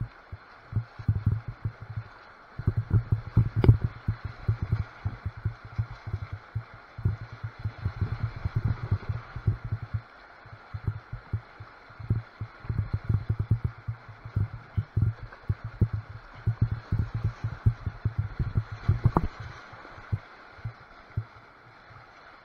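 Kayak running whitewater rapids: steady rushing water with irregular low thumps of water slapping against the kayak's hull, in runs with short lulls, and a couple of sharp knocks.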